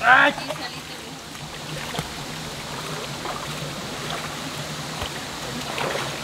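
Shallow rocky stream running steadily over stones, an even rushing of water.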